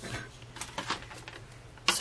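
A few light clicks and taps as a paper trimmer is brought in and set down on the desk.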